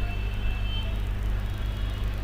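Steady low background hum with faint hiss, and a faint high tone that fades out about a second in.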